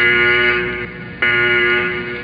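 A buzzy electronic tone sounding twice at the same pitch, each note starting sharply and fading over about a second.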